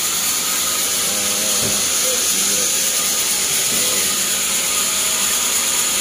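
A steady high-pitched hiss at an even level, with faint voices in the background.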